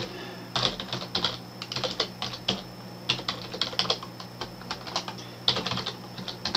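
Computer keyboard being typed on: an uneven run of key clicks, several a second, as an email address is entered.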